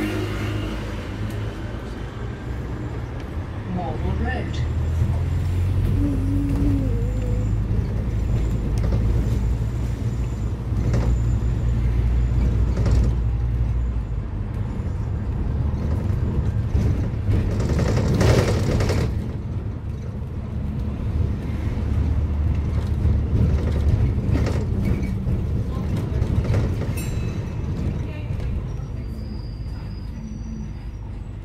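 London double-decker bus running through traffic, heard from the upper deck: a steady low engine and road rumble that swells about four seconds in as the bus picks up, with a brief hiss of air about eighteen seconds in.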